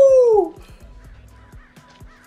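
A man's high, drawn-out "ooh" exclamation that slides down in pitch and stops about half a second in, followed by faint show audio.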